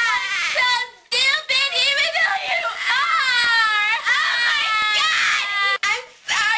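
Two girls shrieking and laughing hysterically in long, high-pitched, wailing cries that slide up and down in pitch, with short breaks about a second in and near the end.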